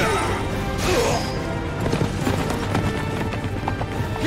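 Dramatic background music with sustained notes over the hoofbeats of galloping cavalry horses, with two sharp whooshes, one at the start and one about a second in.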